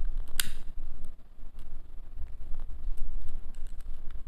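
A handheld lighter being clicked to light a candle: one sharp click about half a second in, then several fainter clicks, over a low rumble.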